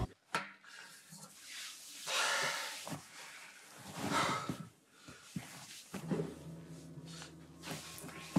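A man breathing hard and groaning as if unwell, with long heavy exhales about two and four seconds in. Near the start a plastic pill bottle is set down on a glass table with a click. Soft music comes in about six seconds in.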